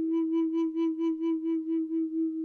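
A large wooden Native American-style flute holds one long note with a pulsing breath vibrato, about six pulses a second.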